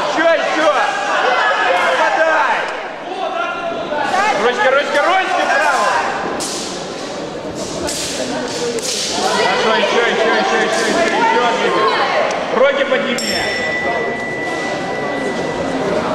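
Voices shouting and echoing in a large sports hall over a kickboxing bout, with thuds of gloved punches in the middle. Near the end a steady high beep sounds for about three seconds: the signal ending the bout.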